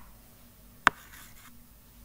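A stylus writing on a tablet screen: one sharp tap of the tip about a second in, followed by a faint brief scratch as the stroke is drawn.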